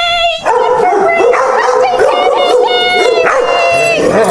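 Puppy whining: a high, wavering whine in the first half second, then louder overlapping whimpers and short yips.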